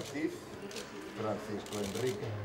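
Indistinct low voices of the people around, with paper rustling and light dry clicks.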